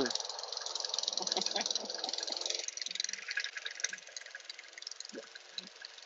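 Petrol push lawn mower running as it cuts grass, a steady rattling hum that drops away about halfway through.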